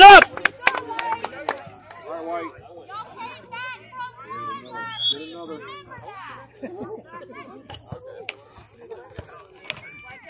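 Children and spectators shouting and calling across an outdoor soccer field: one loud shout right at the start, then scattered fainter calls and chatter, with a few sharp taps among them.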